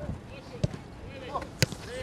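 A football struck twice in short passes on grass, about a second apart, the second kick the louder, with players' voices calling out between the kicks.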